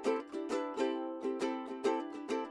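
Light background music: a quick, even run of plucked-string notes.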